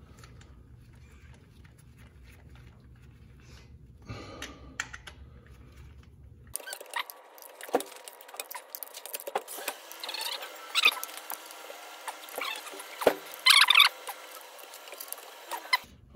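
Ratchet wrench driving down the flywheel bolts on the crankshaft, with sharp clicks and light metallic clinks of socket and bolts, and two louder bursts of ratchet clicking in the second half. The first few seconds hold only faint handling sounds as the bolts are threaded by hand.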